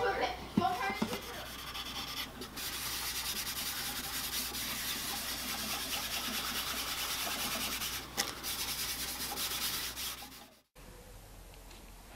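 A gloved hand rubbing a cloth pad over an acoustic guitar's wooden back to wipe on a coat of finish: a steady rubbing hiss with two brief pauses, cut off suddenly near the end.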